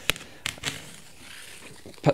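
Utility knife slitting the packing tape and cardboard seam of a large shipping box: a few sharp clicks in the first second, then a faint scratchy hiss of the blade.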